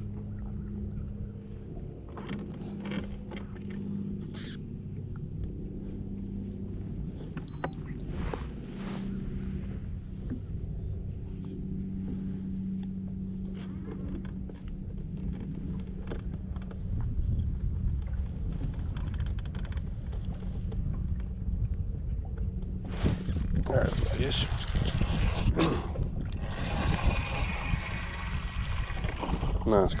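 An electric trolling motor hums steadily and low. In the last several seconds a spinning reel is cranked fast as a hooked crappie is reeled up to the surface.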